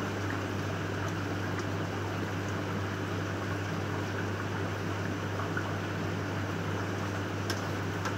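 Steady low electrical hum under a constant watery hiss, the running of a pump or filter with water moving, with a faint click near the end.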